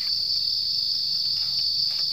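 A steady, high-pitched insect chorus, one constant buzzing drone that does not change.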